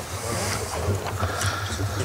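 Paper being handled and a pen writing at a table microphone, a few soft scrapes and rustles over a steady low hum.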